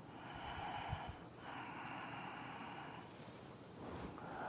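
Slow, audible nasal breathing close to the microphone: two long, soft breaths, each lasting about a second and a half.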